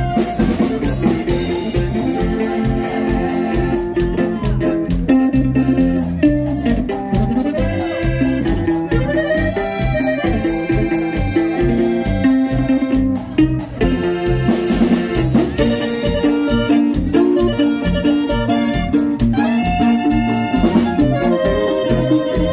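Live norteño band playing through a stage PA: accordion carrying the melody over guitar, electric bass and a steady drum beat.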